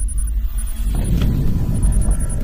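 Sound effect for an animated title: a loud, steady deep rumble with faint rapid high pips, swelling about a second in.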